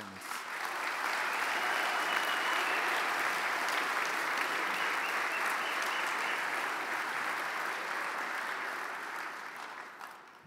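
A large audience applauding and cheering. It swells in the first second, holds steady, then dies away near the end.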